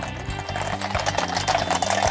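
Several horses' hooves clip-clopping on the road in a quick, uneven patter as a mounted column rides by, with background music playing underneath.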